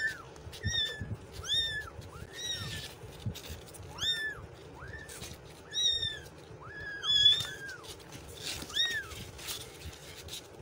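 Young kittens mewing repeatedly: about a dozen short, high mews, each rising then falling in pitch, coming less than a second apart.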